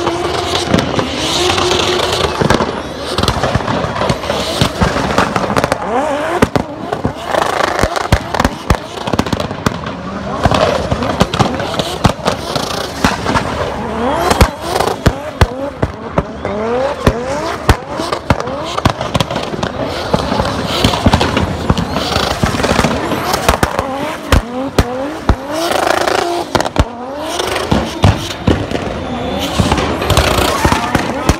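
Drift car's engine revving hard again and again while its rear tyres squeal in a long burnout, with many sharp cracks and bangs mixed in.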